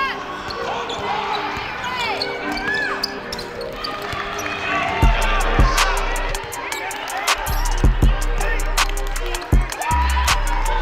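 Basketball game sound from a hardwood court: sneakers squeaking in short rising-and-falling chirps and the ball bouncing. About halfway through, music with a deep bass line and a sharp beat comes in over it.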